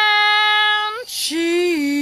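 A tipsy woman singing unaccompanied: a long held high note that breaks off about a second in, a quick breath, then a lower note that dips slightly in pitch.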